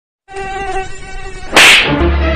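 A mosquito's thin whine, steady with a slight waver, then about one and a half seconds in a loud slap on a face that cuts it off.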